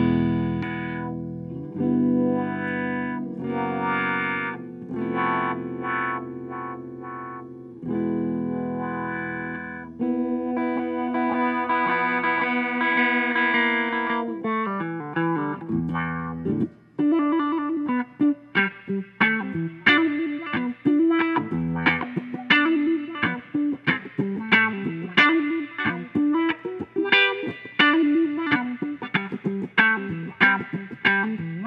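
Telecaster-style electric guitar played through a wah-wah pedal used as a sweeping filter. First sustained chords whose tone opens and closes. Then, after a short drop about 16 seconds in, a rhythmic strummed part with sharp, percussive muted strokes.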